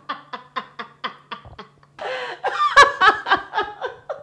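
A woman laughing: a quick run of short, even laughs, about five a second, then a louder, fuller burst of laughter in the second half.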